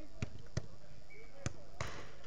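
Four sharp thuds of a football being played on an artificial-turf pitch, the last with a short rattle, over faint distant shouting.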